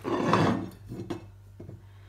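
Green glass olive oil bottle handled against a ceramic sink while oil is poured onto a hand: about half a second of noisy handling, then a few light knocks of glass on the sink as the bottle is stood down.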